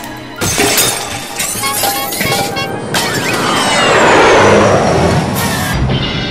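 Background music with cartoon sound effects of shattering: sharp cracking hits, then a long, loud breaking crash that swells to its peak about four seconds in and dies away, with another hit near the end.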